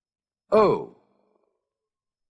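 A voice says a single drawn-out "oh", the number zero, about half a second in, its pitch rising and then falling.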